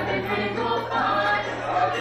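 Music with a group of voices singing, over a steady low drone.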